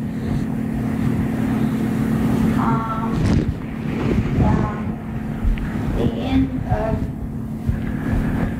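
Faint, distant voices of people in a class answering a question, a few short remarks, over a steady low hum and room rumble.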